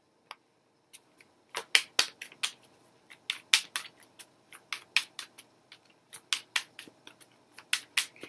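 A deck of oracle cards being shuffled by hand: a run of sharp, irregular clicks and snaps, a few per second, starting about a second in.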